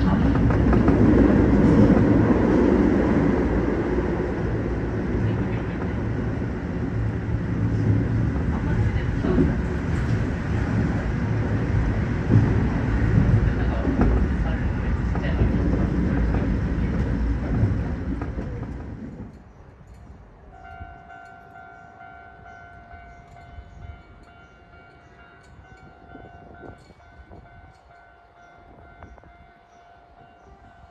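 Keio Line commuter train running, heard from the front of the train: a loud, steady rumble of wheels on rail and running gear. After about nineteen seconds the sound drops suddenly to a much quieter background with faint steady tones.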